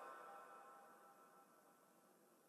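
Near silence, with a fading echo dying away in the first half second.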